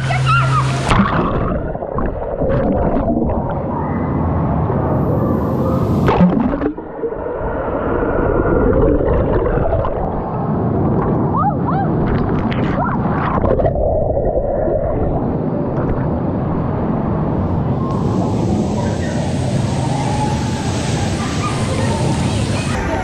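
Water sloshing and gurgling around an action camera at the waterline, mostly muffled as the camera sits under the surface, the sound opening up again near the end as it comes back up.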